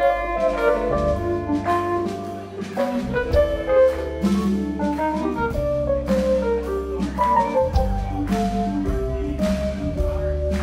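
A live blues band playing an instrumental passage: sustained keyboard chords and lines over electric bass and drum kit with cymbals.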